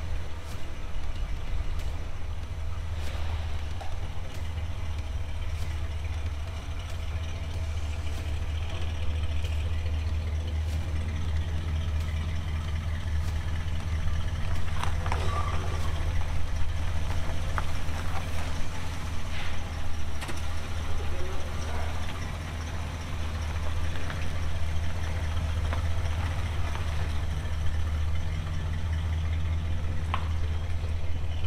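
The 1967 Cadillac Coupe DeVille's 429 V8 running steadily at low speed as the car is driven slowly out of the shop and back in, a little louder in the middle.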